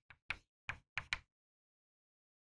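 Chalk writing on a chalkboard: five short, sharp taps of the chalk against the board within about the first second.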